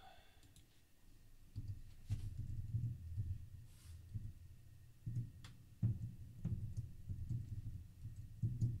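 Computer keyboard typing: scattered sharp key clicks over uneven low thuds, starting about a second and a half in.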